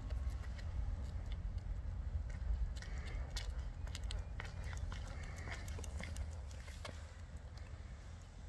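Footsteps on asphalt as a person walks a dachshund puppy on a lead, heard as irregular light taps and clicks over a steady low rumble.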